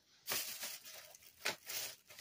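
Cardboard-and-plastic gift box being handled and set down, a faint rustling and scraping with a few louder scrapes about a quarter second and a second and a half in.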